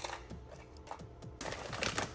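Light clicking and crinkling of buffalo pretzel chips and their snack bag being handled, with a louder crackle near the end, over background music.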